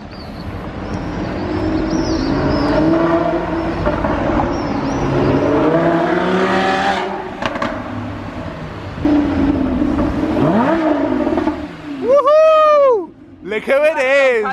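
Lamborghini Huracán's V10 engine accelerating up the hill, its note rising in pitch over several seconds. Near the end the car comes alongside and gives one sharp, very loud rev that rises and falls within about a second.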